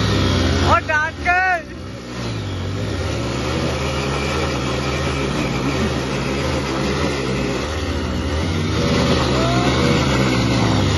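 Two Hero Splendor motorcycles' small single-cylinder four-stroke engines running at high revs as they strain against each other on a tow rope. About a second in there is a brief wavering shout from a person.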